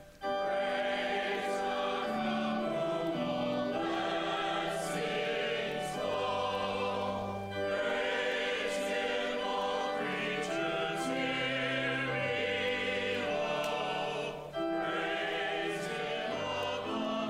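A hymn sung by a choir with organ accompaniment, in long held notes, with short breaths between phrases about 7.5 and 14.5 seconds in.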